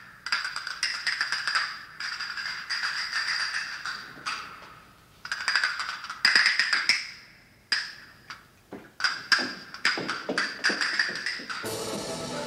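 Castanets played in rapid clicking rolls and sharp clacks, in several bursts with short pauses between. A pitched musical accompaniment comes in near the end.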